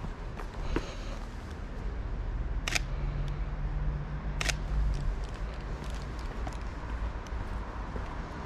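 Camera shutter firing twice, a sharp click about three seconds in and another about a second and a half later. A steady low street rumble runs under it.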